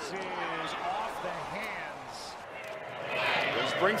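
Football TV broadcast audio: indistinct voices over steady stadium background noise, growing louder near the end.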